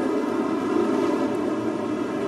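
A steady, even hum with faint sustained tones and no speech.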